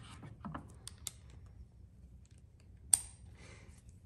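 Faint metallic clicks and taps as a bit is handled and fitted into a spring-loaded manual impact driver, with one sharper click about three seconds in.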